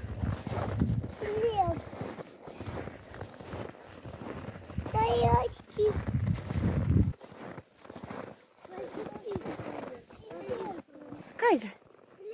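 Footsteps crunching through deep snow, walking steadily and stopping about seven seconds in, with short voice calls scattered over them.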